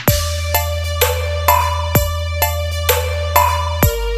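Bass-heavy electronic DJ sound-check remix: a long held, very deep bass note runs under high synth melody notes and regular percussion hits. A deep bass drum with a falling pitch strikes at the start, about two seconds in, and again near the end, where the bass note changes.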